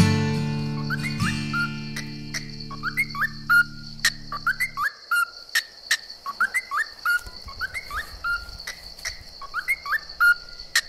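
Acoustic guitar's final strummed chord ringing out, then stopping abruptly about five seconds in. A bird repeats a short rising chirp about once a second throughout, over a steady high-pitched hum.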